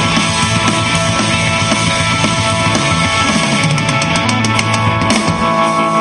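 Live rock band playing loudly: electric guitars and a drum kit, with a quick run of drum hits about four seconds in.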